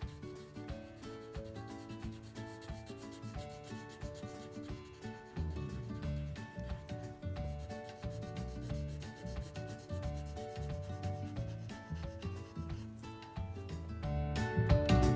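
Colored pencil rubbing on paper in rapid back-and-forth shading strokes, heavier from about five seconds in.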